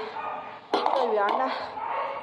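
A woman's voice talking, with a light metallic clink about two-thirds of a second in.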